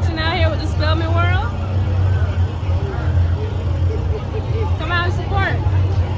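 Outdoor crowd chatter with a steady low rumble underneath, and a woman's voice talking at the start and briefly again about five seconds in.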